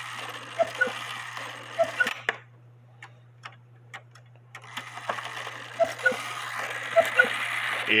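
Hubert Herr cuckoo quail clock movement ticking in pairs about once a second, with light clicks of the wire trip lever being pushed down by hand, over a steady low hum. The lever does not trip the cuckoo properly because its wire is spread too far apart.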